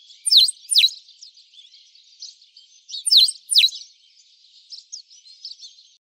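Birds twittering, high and continuous, with two pairs of loud, sharp downward-sweeping chirps, one pair near the start and another about three seconds in.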